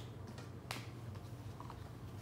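Deck of cards being shuffled by hand, with one sharp card snap about two-thirds of a second in and a few lighter taps of cards, over a low steady hum.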